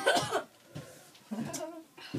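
A boy coughing hard at the start, his throat burning from a dried ghost pepper he has just chewed, followed by a short mumbled word.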